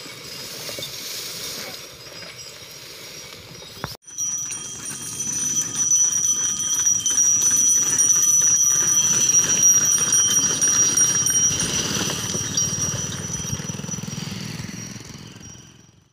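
Loaded sugarcane bullock cart rolling close past, its wheels rattling and rumbling on the road under a steady high-pitched ringing tone. The sound swells about four seconds in, is loudest midway and fades away toward the end.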